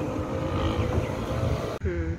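Steady rumble of road traffic, with no clear single vehicle standing out; it breaks off abruptly near the end.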